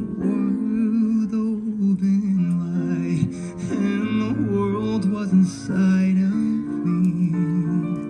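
A male voice singing a slow ballad into a microphone over a recorded piano accompaniment, his notes gliding and held.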